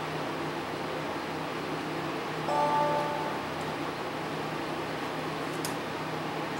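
Steady low hum of workbench equipment, with a short tone of about half a second some two and a half seconds in.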